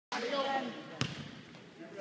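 A basketball bouncing once on a gym's wooden floor about a second in, a single sharp thud with a short echo.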